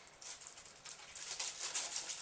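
A chocolate bar's wrapper crinkling and rustling in the hands as it is opened: a run of small, quick crackles, denser in the second second.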